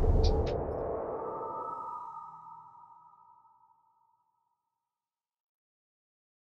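Audio sting of the TWiT network's closing logo animation: a ringing electronic ping in two close tones, fading out over about three seconds.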